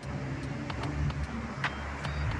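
City street traffic: a steady low rumble of car engines, with a few sharp clicks.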